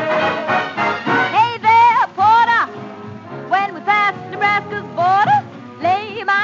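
A 1940s swing band's instrumental break between sung verses, played from an original 78 rpm record: pitched phrases that slide up and then arch over, in three groups, over a steady rhythm accompaniment.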